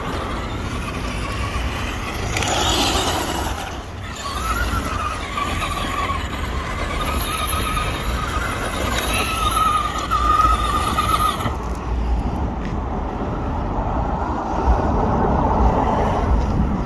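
Traxxas Rustler RC truck driving on loose dirt: its electric motor and gears whine, rising and falling in pitch as it speeds up and slows, over a hiss. The whine stops about three-quarters of the way through, leaving a low rumble.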